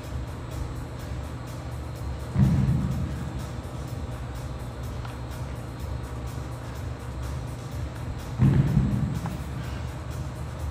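Two heavy thuds on the gym floor about six seconds apart, from a pair of dumbbells and the athlete working through double-dumbbell burpee deadlifts, over steady background music.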